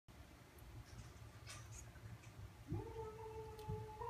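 One long, steady pitched call, rising briefly at its start and then held, beginning nearly three seconds in, after a few faint clicks.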